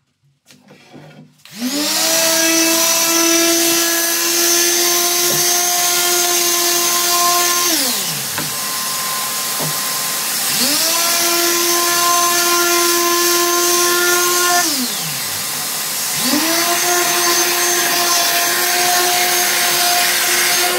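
Makita random orbital sander with a dust-extraction hose attached, sanding a wooden board. It is switched on three times; each time its motor rises quickly to a steady high whine and holds for several seconds, and the first two runs wind down again. A steady rushing hiss of the extraction carries on through the pauses.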